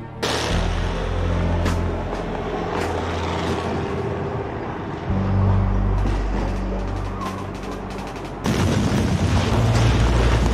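Battle scene soundtrack: held low music chords under gunfire and shell explosions, with a sudden loud burst of blast noise about eight and a half seconds in.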